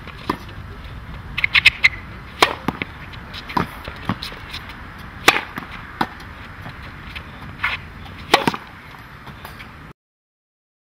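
Tennis racket striking the ball in volleys at the net: sharp pops roughly once a second, a quick flurry of several hits early on, and softer knocks between them. The sound cuts off suddenly near the end.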